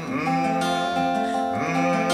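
A man humming long 'mmm' notes over a fingerpicked acoustic guitar playing E and F chords. A new hummed note slides in at the start and another about a second and a half in.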